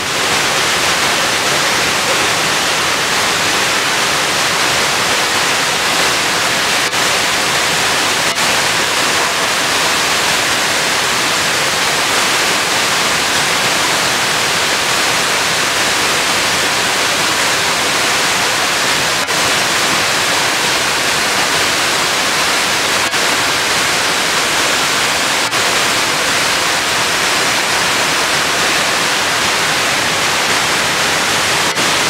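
Multi-tiered waterfall cascading over terraced rock: a steady, unbroken rush of falling water.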